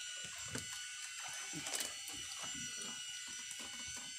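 Baitcasting fishing reel being cranked steadily: a low whirring buzz with an even rhythm of handle turns, as a hooked fish is winched in against a bent rod.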